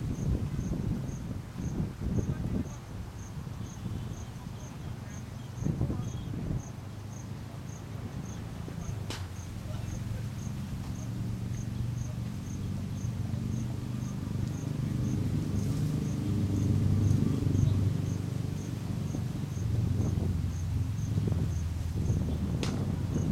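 An insect chirping steadily, short high chirps about one and a half times a second, over a low background rumble that grows louder in the second half. One sharp click sounds about nine seconds in.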